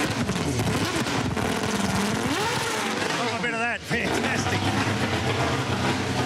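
Mercedes E63 AMG V8 Supercar's flat-plane-crank V8 being revved, its pitch sweeping up and down in several blips, then settling to a steady idle for the last two seconds. Heard close up at the exhaust pipe.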